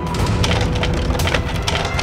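Sound effect of wood creaking and splintering: a dense run of cracks and ticks over a low rumble.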